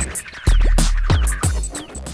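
Electronic intro music with turntable-style scratch sounds and deep bass hits, the strongest about half a second in, growing quieter toward the end.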